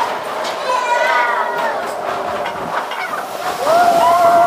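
Riders on a Matterhorn Bobsleds car screaming and whooping in long, wavering yells, over the rattling of the bobsled running on its steel track.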